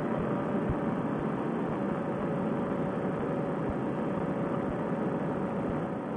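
Steady drone of a paramotor trike's engine and propeller in level cruising flight, mixed with rushing air, with a faint steady tone running through it.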